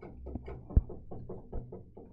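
Reel-to-reel tape recorder's transport mechanism ticking rapidly and evenly, about seven ticks a second, over a low hum, as its spindle drive is worked by hand. A sharp knock stands out a little under a second in. The main rubber drive band is perished and broken.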